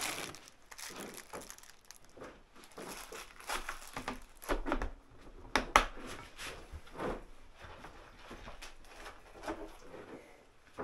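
Rustling and clattering of small parts and packaging being handled on a workbench, with a few irregular sharp clicks.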